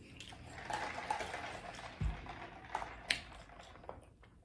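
Close-miked eating and drinking sounds: mouth noise from chewing, a low thump about halfway through as a plastic tumbler is lifted off the table, then sipping through its straw with a couple of sharp clicks.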